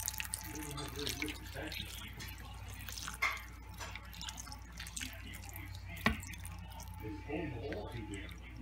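Hot beef broth being poured from a glass measuring cup into a frying pan of browned meat, splashing and dripping, with two sharp clicks about three and six seconds in.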